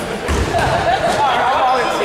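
Players' voices calling out in a large, echoing gym during a basketball game, with a basketball bouncing on the hardwood floor about a third of a second in.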